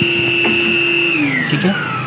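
An electric vacuum cleaner's motor running with a steady whine, then switched off about halfway through, its pitch falling as it spins down.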